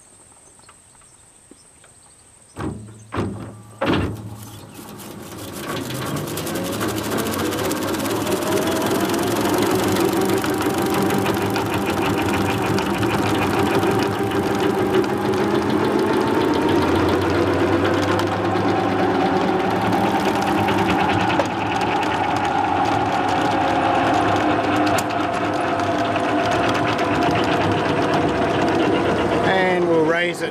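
Electric PTO motor of a converted David Brown 880 tractor starting a 1.5 m slasher mower. There are three knocks as the drive takes up, then the motor and the mower blades run up to speed over several seconds and settle into a steady mechanical whine, its pitch rising a little about halfway through.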